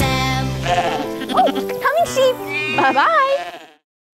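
The last sung note of a children's song over its backing music, then several sheep bleats ('baa') with wavering pitch, fading out just before the end.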